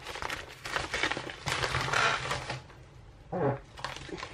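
Paper envelope and plastic packaging rustling and crinkling as the package is opened and its contents handled, with a brief hum of a voice a little past three seconds in.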